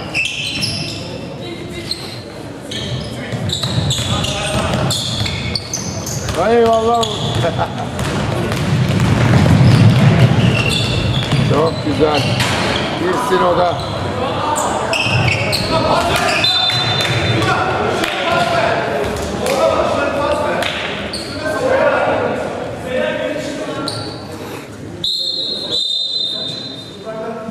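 Basketball bouncing on a hardwood gym floor during live play, with repeated sharp thuds amid players' and spectators' shouts that echo around a large sports hall.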